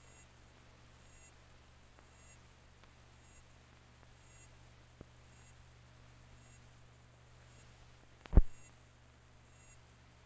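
Steady low hum from an old film soundtrack, with faint, evenly repeating ticks. A small click comes about five seconds in, and a single loud, low thump comes near the end.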